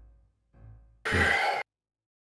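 A person sighing once into a microphone, a breathy exhale about half a second long that comes about a second in and cuts off abruptly.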